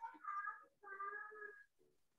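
A child's voice, faint and thin over a video call, in two drawn-out, sung-out sounds while reading aloud haltingly.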